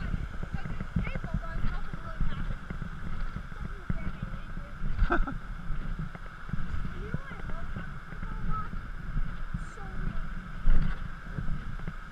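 Steady rushing of a mountain creek under low thumps and rumble from a moving, body-worn action camera on a trail, with a few spoken words about five seconds in.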